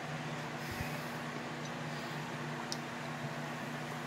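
Ginger ale poured from a glass bottle into a tumbler, fizzing and foaming as it fills, over a steady low hum in the room. A soft thump comes about a second in.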